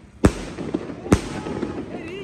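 Aerial firework shells (skyshots) bursting overhead: two sharp, loud bangs about a second apart, each followed by a brief noisy tail.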